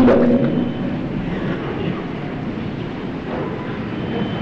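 A man's voice trails off in the first moment, then a steady background hiss and rumble of an old recording fills the pause.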